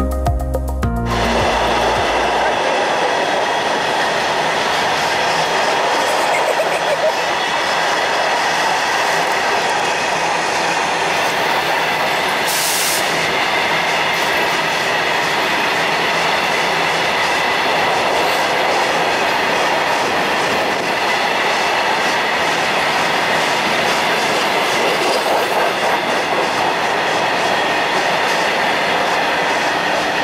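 Indian Railways electric multiple unit (EMU) suburban train running on the track: a steady rumble of wheels on rail with a faint high tone in it, and a brief hiss about twelve seconds in. A second of music fades out at the start.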